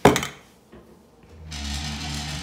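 A single sharp thump right at the start, dying away within about half a second; then quiet, and from about a second and a half in a steady low hum with an even hiss.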